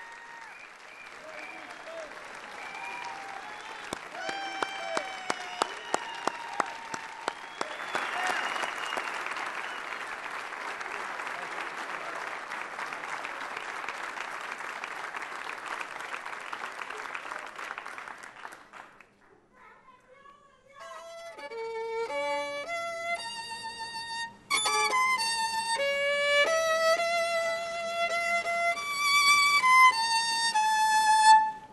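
Audience applauding and cheering for about nineteen seconds, then a brief hush. A solo violin then begins a slow melody of clear, held notes.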